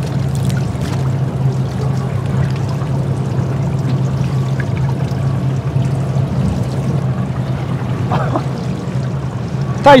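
Fishing boat's engine idling with a steady low hum while the boat drifts, water sloshing and splashing against the hull.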